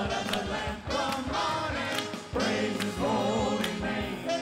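Gospel choir singing a praise song with a band behind it keeping a steady beat.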